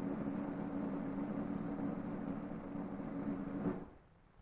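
A steady low hum over a hiss, which cuts off suddenly near the end.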